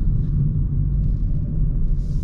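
Steady low rumble of engine and road noise heard inside the cabin of a Hyundai i30 Wagon (2020 facelift) while it is being driven.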